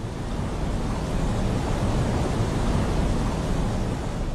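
Tsunami floodwater surging through a town: a steady, dense rushing rumble, heaviest in the low range, that swells in over the first half second.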